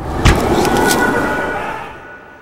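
Harsh, rushing dramatic sound effect as the vampire lunges with his mouth open. It starts suddenly, carries a few sharp cracks in its first second, and fades away over about two seconds.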